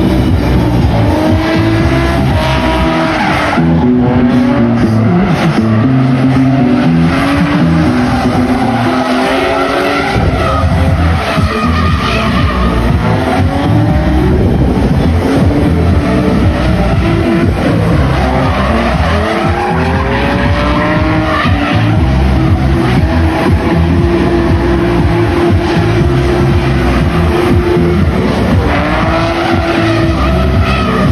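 Two drift cars, one a BMW E36, drifting in tandem: the engines rev up and down again and again over a steady rush of tyre squeal and skidding.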